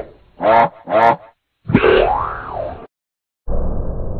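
Cartoon logo sound effects: two short springy boing-like sounds in quick succession, then a longer sliding sound that rises and falls in pitch and cuts off. After a brief gap, a new, duller-sounding clip starts near the end.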